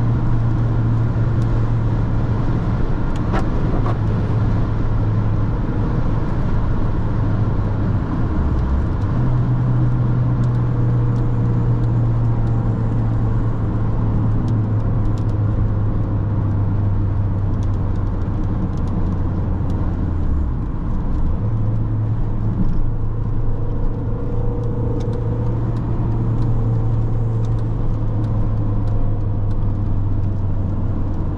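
Inside the cabin of a 2001 Mini One R50, its 1.6-litre four-cylinder petrol engine holds a steady low drone at highway speed under a constant wash of tyre and road noise. The engine note dips briefly twice, about a third of the way in and again about two-thirds in, then settles back.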